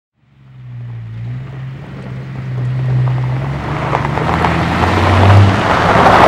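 A motor vehicle drawing nearer: a low engine rumble with a rising wash of road noise that grows steadily louder.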